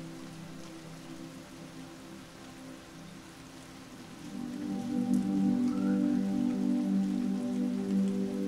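Steady rain falling, under soft sustained music chords that swell louder about four seconds in.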